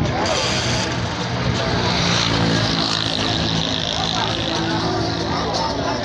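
An engine running steadily close by, with people talking over it.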